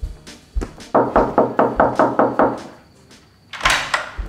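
Rapid knocking on a door, about eight quick even knocks, over background music with a low beat. A short, loud, sharp noise follows near the end.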